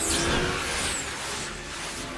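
Film sound effects of military drones flying past a burning C-130 Hercules: a loud rushing whoosh at the start that eases into a steadier aircraft engine drone.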